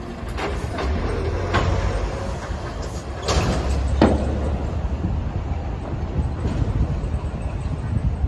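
Large factory fire burning, heard as a steady low rumble with several sharp cracks and pops. The two loudest cracks come about three and four seconds in.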